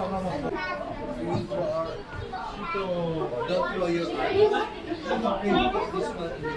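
Chatter of a crowd of people waiting in a queue: many overlapping voices talking at once, children's voices among them, none clear enough to follow.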